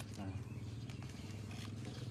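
A steady low hum of a running motor, with a short spoken "nah" at the start.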